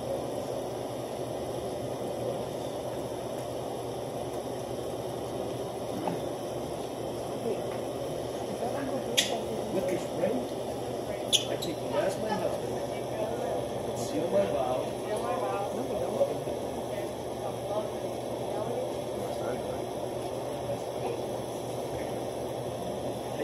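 Indistinct low voices murmuring in a room over a steady low hum, with a few sharp clicks around the middle.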